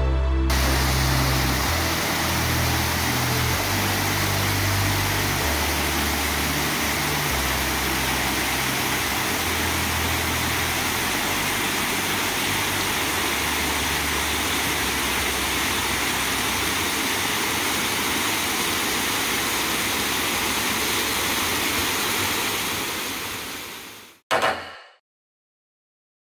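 Water pouring over a small rock cascade: a steady rushing splash that fades out near the end. Low music notes sound under it for roughly the first ten seconds.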